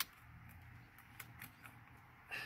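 A sharp click at the start, then a few faint light clicks and rattles as the steering wheel and its plastic wiring connectors are handled and the wheel is lifted off the steering column.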